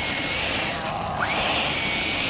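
The twin electric ducted fans of a Freewing F-22 RC jet on 8S power, running with a high whine. About a second in the throttle drops briefly, and the fans spool back up with a rising whine.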